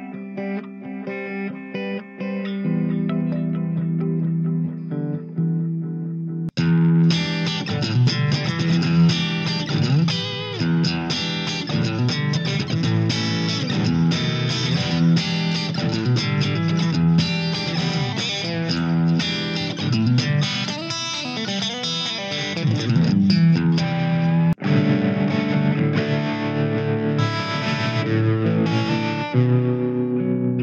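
Electric guitar played through a Blackstar ID:Core stereo combo amp, stepping through the amp's channels with effects. Picked notes and a ringing held chord give way abruptly, about six seconds in, to brighter, denser playing. The tone changes suddenly again a few seconds before the end, leading into the crunch channel with tremolo, multi-tap delay and spring reverb.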